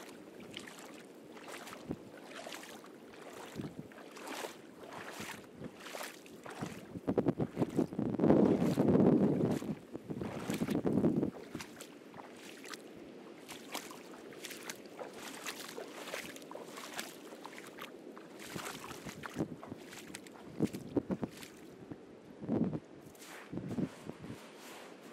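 Footsteps walking on a beach, a regular crunch about twice a second. A much louder low rushing noise comes in for about four seconds in the middle.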